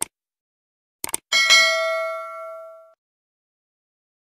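Subscribe-button animation sound effect: a mouse click, then two quick clicks about a second later, followed by a bright bell ding that rings out and fades over about a second and a half.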